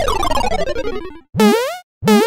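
Cartoon-style sound effect: a jumble of tones all sliding down in pitch for about a second, then a short springy boing near the end, the first of a series that repeats about every two-thirds of a second.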